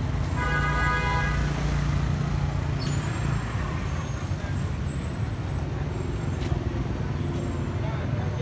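Steady low rumble of street traffic and engines, with a vehicle horn sounding once, briefly, about half a second in.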